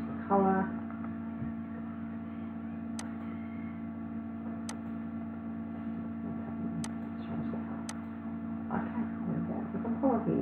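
Steady electrical mains hum, with four sharp, light computer-mouse clicks spread through as colours are picked. A short vocal sound just after the start is the loudest moment.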